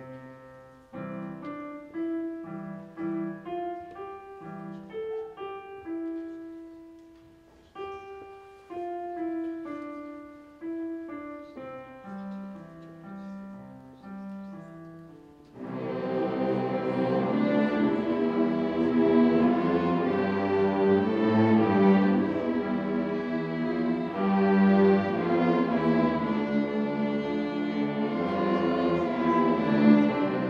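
Piano playing an introduction of single notes, each struck and fading. About halfway through, a beginner string orchestra of violins and cellos comes in together with sustained bowed notes, much louder than the piano alone.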